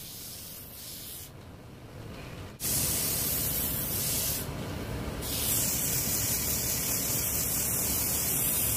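Abrasive sanding of a spinning wooden rolling pin on a lathe: a steady hiss of paper on wood over the lathe's running, cutting out briefly and then coming back louder about a third of the way in.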